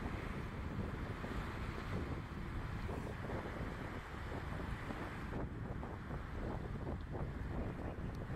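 Brisk sea breeze blowing across the microphone over choppy water: a steady rushing wind noise with the wash of small waves beneath it.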